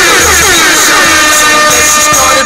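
Hip-hop music in a pause between rapped lines: a beat with deep bass and a quickly repeating falling tone.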